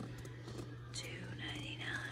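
A woman speaking quietly, almost in a whisper, over a steady low hum.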